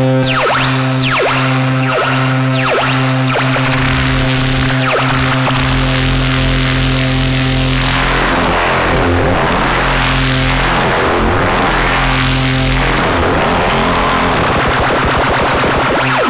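Eurorack modular synthesizer drone, a sustained low note with steady harmonics, run through a Xaoc Devices Kamieniec phaser whose knobs are being turned, giving repeated sweeps in the upper range. About halfway through the sound turns noisier and more chaotic, with slower sweeps and a deep low rumble underneath.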